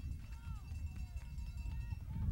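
Scattered distant voices of spectators and players calling out around a youth football field, with no clear words, over a steady low rumble.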